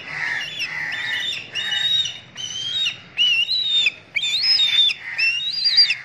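Birds calling: crows cawing and a black kite giving a run of short, high whistled calls that rise and fall, about one every half second to a second, growing louder toward the end.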